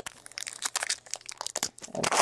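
Foil trading-card pack wrappers crinkling and cards being handled, a quick irregular run of small crackles and clicks.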